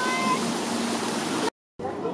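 Fountain water splashing in a steady rush, with a brief high-pitched call or squeal over it in the first half-second. The sound cuts out abruptly about one and a half seconds in, then returns as quieter street sound.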